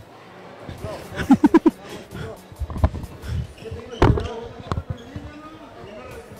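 Handling knocks and thumps on a handheld phone's microphone as it is bumped about in a pushing crowd, the sharpest knock about four seconds in. A quick run of four short, loud shouted syllables comes a little over a second in, with scattered voices around.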